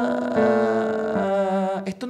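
A man singing a vocal warm-up on an open "ah": three held notes, each a step lower than the last, stopping shortly before the end. It is a descending-scale exercise that puts pitches to the vocal fry.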